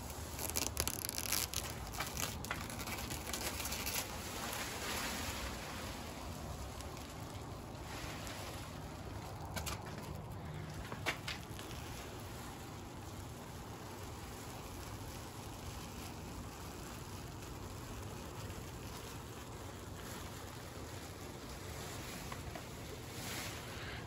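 Faint crinkling of plastic sheeting and soft pattering of stripper-softened paint falling away from the trailer's aluminum skin. There are a few louder crackles in the first few seconds and one sharp tick about eleven seconds in.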